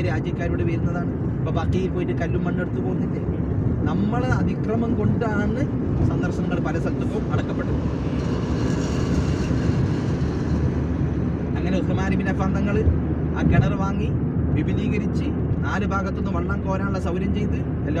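Steady road and engine rumble inside a moving car's cabin, with people talking over it. A rushing hiss swells and fades around the middle.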